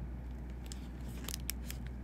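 A few short, sharp crackles and clicks of handling noise, scattered through the second half, over a steady low hum.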